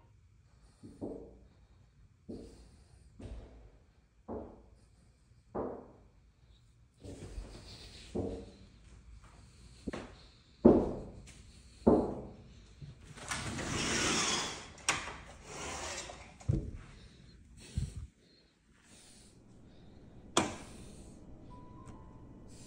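Knocks and bangs on a glass sliding door, recorded on a phone: about ten separate, irregular blows one to two and a half seconds apart, some much louder than others. A longer rustling noise comes about midway.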